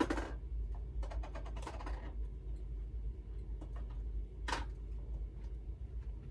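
Scattered clicks and light knocks of small jars being rummaged through while digging for Inka Gold paste, with a cluster about a second in and a sharp knock about four and a half seconds in, over a low steady hum.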